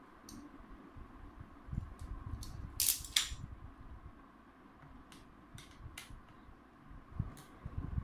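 Utility knife blade scraping and clicking on the laptop's plastic bottom panel as a small hole is cut. There are scattered sharp clicks, and a louder short scrape about three seconds in.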